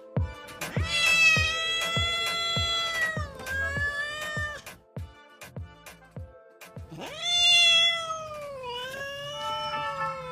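Four long, drawn-out domestic cat meows, each rising at the start and sliding down at the end, over background music with a steady beat.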